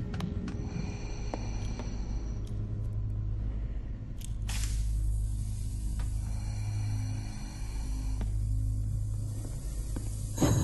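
Dark, suspenseful film score: a steady low drone with a few sharp clicks early on and a brief hissing swell about four and a half seconds in.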